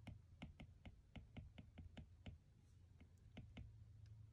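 Faint, quick clicks of an Apple Pencil tip tapping on an iPad's glass screen during handwriting. About a dozen come in the first two seconds, and a few more follow later.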